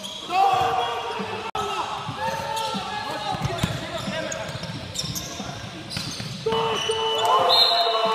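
Amateur basketball game on a hardwood gym court: players' voices calling out over scattered sharp thuds of the ball bouncing. Near the end a steady high tone comes in.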